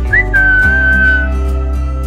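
A woman whistling: a short rising note, then one long held note of about a second, over background guitar music.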